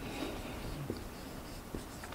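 Marker writing on flip-chart paper: a run of short, scratchy strokes as a word is written.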